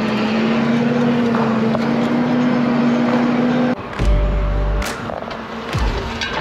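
Tractor engine pulling a heavy cultivator, heard from inside the cab as a steady hum. A little over halfway through, the sound cuts abruptly to a rough low rumble with scattered knocks: the cultivator's tines and rollers working dry soil close to the microphone.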